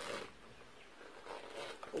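Faint handling sounds of a small handbag as fingers fumble at the zip of an inner compartment, with the tail of a word at the start.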